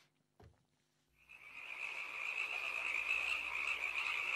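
A chorus of frogs calling: after about a second of near silence it fades in and grows steadily louder into a dense, high-pitched din.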